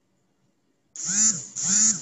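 Two short calls about half a second apart, each rising and then falling in pitch, starting about a second in after a silent pause.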